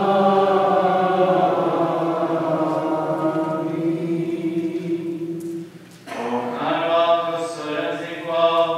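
Maronite liturgical chant sung without accompaniment. One long phrase is held for several seconds, breaks off briefly about six seconds in, and then a new phrase begins.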